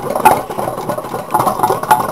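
Homemade tin-can Stirling engine running, its bent-wire crankshaft and linkages clicking and rattling as they turn, with a couple of sharper clicks.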